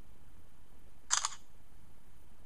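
Android phone's camera shutter sound, one short double click about a second in, as the Pano app automatically captures the next frame of a panorama.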